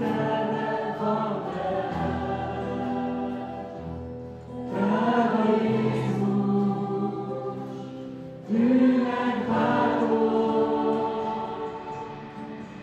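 A group of voices sings a Hungarian worship song together over strummed acoustic guitars, in long held notes. New phrases come in louder about five seconds in and again about eight and a half seconds in.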